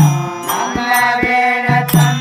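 Devotional bhajan accompaniment: a harmonium holding chords over tabla strokes, with small hand cymbals clinking about twice a second to keep the beat.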